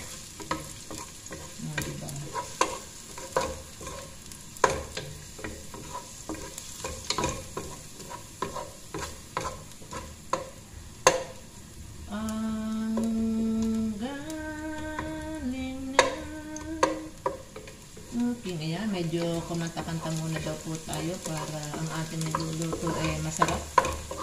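Wooden spoon stirring and scraping chopped garlic as it sizzles in a little hot oil in a nonstick pot, with frequent light knocks against the pot. Halfway through, a voice hums a tune in long held notes for a few seconds, then again near the end.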